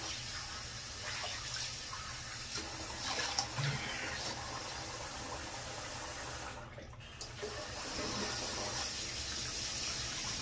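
Bathroom sink tap running with water splashing as a face is rinsed after shaving. The flow dips briefly about two-thirds of the way through, then comes back a little louder.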